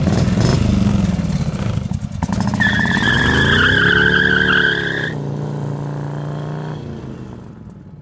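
Morgan Three Wheeler's front-mounted V-twin engine, just started, blipped once, then pulling away with its pitch rising under acceleration. A high wavering squeal rides over it for a couple of seconds. The engine then settles and fades as the car drives off.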